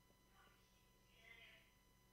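Near silence with faint, distant voices in the background and a steady low electrical hum.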